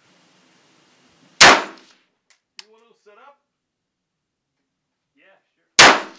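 Two rifle shots from a Sig Sauer 516 firing .223 ammunition, one about a second and a half in and one near the end, each a sharp crack with a short ringing tail. A couple of faint clicks follow the first shot.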